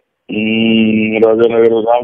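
A man's voice on a telephone line holds one long drawn-out vowel for about a second, then breaks into rapid speech.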